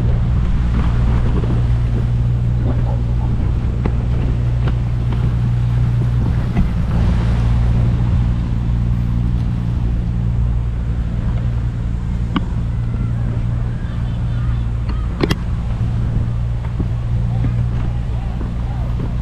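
Steady low engine drone of a running vehicle, constant throughout, with two sharp clicks in the last third.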